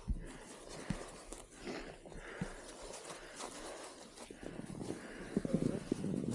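Irregular thumps and crunches of a skier moving through deep powder snow, getting louder near the end.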